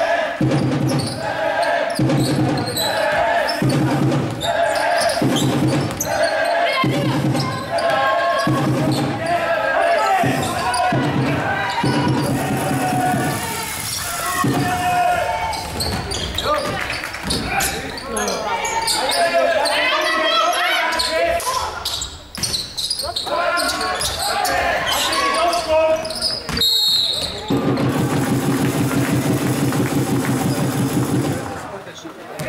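Basketball game in a sports hall: the ball being dribbled on the hardwood floor in an even beat, with players and spectators shouting. A short high whistle sounds near the end, typical of a referee stopping play, and a steady low drone comes in just after.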